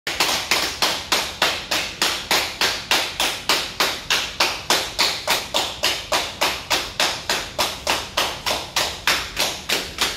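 Hospital staff clapping their hands in a fast, even rhythm, one steady train of claps without a break.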